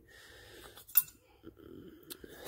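A single sharp metallic clink about a second in, among faint handling noise, as tools and valve parts are worked on a bare cylinder head during valve stem seal removal.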